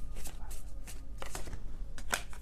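Tarot deck being shuffled by hand: a quick, irregular run of short card flicks and snaps.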